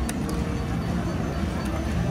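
Casino floor background din, a steady low noise of machines and people, with two short clicks near the start.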